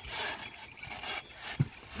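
Straw-laden wooden bullock cart being hauled through mud: rough rubbing and scraping noise from the cart and yoke, with one dull thump about one and a half seconds in.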